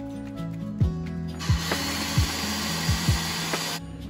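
Personal blender running for about two seconds, whizzing pancake batter of oats and egg, then cutting off suddenly. Background music with a steady beat plays underneath.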